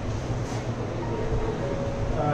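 Steady low rumble of background room noise, with a few faint brief sounds over it.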